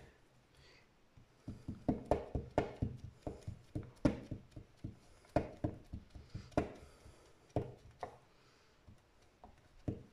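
Clear acrylic stamp block being tapped again and again onto paper on a cutting mat: a run of light, irregular knocks, a few a second, starting about a second and a half in and thinning out near the end.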